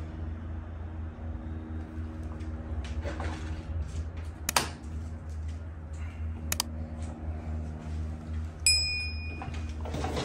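A low steady hum with a few sharp clicks, then the sound effects of a subscribe-button animation: a mouse click a little past halfway and a bright bell ding near the end.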